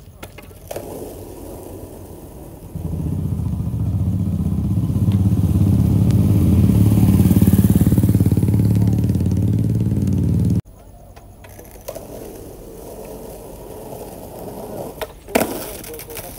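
A motorcycle engine running close by, growing louder over several seconds and then cutting off suddenly. Near the end a skateboard clatters onto the asphalt as it shoots away from the skater on a missed trick.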